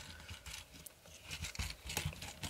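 Faint clicks and taps of a plastic Transformers Optimus Prime action figure's parts being flipped over and snapped into place by hand.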